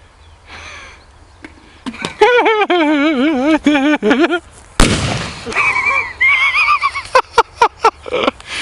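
A firecracker explodes inside a plastic electric kettle with one loud, sharp bang about five seconds in, knocking the kettle over and blowing a hole in its side. Before the bang comes a wavering, pitched tone for about two seconds, and after it a few sharp cracks.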